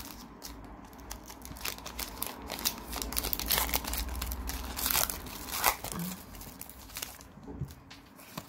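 Foil wrapper of a Pokémon card booster pack being torn open and crinkled as the cards are pulled out: a run of sharp crackles and rustles.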